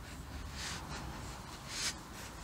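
Two faint breaths, about a second apart, from a grappler holding a top pin on the mat.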